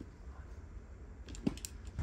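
Quiet outdoor background with a steady low rumble, and a few faint clicks and a soft knock about a second and a half in.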